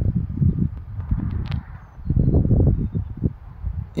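Wind buffeting the phone's microphone outdoors: an uneven low rumble that swells and dips.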